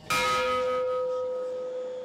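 A bell struck once, ringing with a clear tone that fades away over about two seconds.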